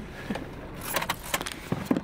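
A quick run of light clicks and rattles starting about a second in, with a short low sound near the end, inside a car.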